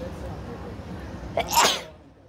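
A boy sneezes once, a short, sharp burst about one and a half seconds in, over background crowd chatter.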